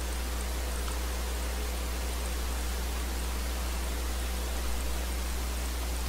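Steady hiss with a low hum underneath: the background noise of the microphone and recording chain, with no other sound standing out.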